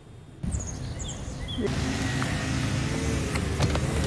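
Steady outdoor background noise with a low, engine-like hum, as of a vehicle running or traffic nearby, starting about half a second in and getting louder after the first second and a half.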